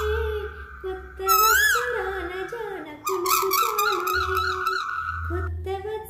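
A woman singing a Telugu song, with a high whistle-like tone sliding up and down and then held above her voice, and a steady low hum underneath.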